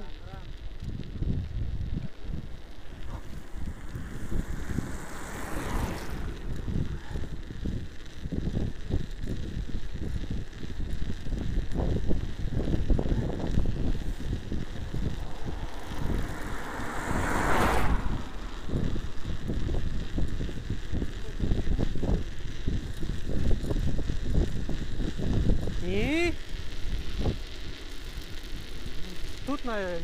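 Bicycle riding on a snow-covered road: a steady rumble of tyres on packed snow and wind buffeting the microphone, with two louder whooshes about five and seventeen seconds in.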